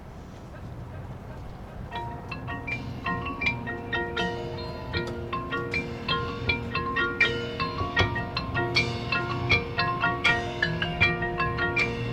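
Marching band's front ensemble opening its show: mallet percussion such as marimba, xylophone and bells playing quick ringing notes over held lower chords, starting about two seconds in and growing louder. Before that, only low background noise.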